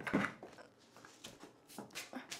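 Plastic buckets of milled grain and a cardboard oats canister being handled and set down on a wooden floor: a few faint, short knocks and rustles.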